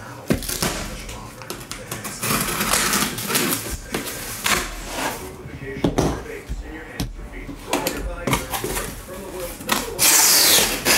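Cardboard case being opened by hand and the boxes inside handled: cardboard rustling and scraping, with sharp knocks and clicks throughout.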